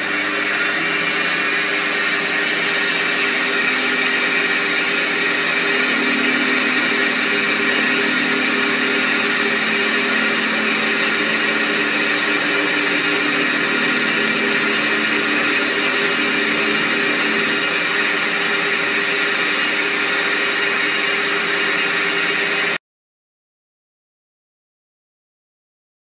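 Small TL250V bench lathe running, its four-jaw chuck spinning while it takes a squaring pass on an aluminium block: a steady motor and gear whine with several held tones. The sound cuts off suddenly near the end.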